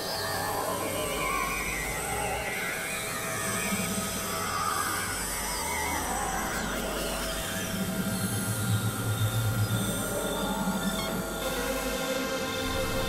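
Experimental electronic synthesizer music: dense, shifting drones and tones over a noisy texture, with a few sliding pitches. A low, pulsing bass swells about eight seconds in, and the texture changes near the end.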